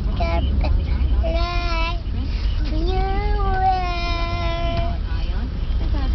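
A young girl singing unaccompanied in high, drawn-out notes: a short held note about a second and a half in, then a long wavering note from about three to five seconds in. A steady low rumble of the moving car's cabin runs underneath.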